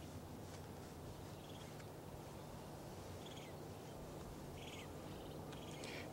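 Faint, steady low hum over quiet background noise, with a few short, faint high chirps scattered through it.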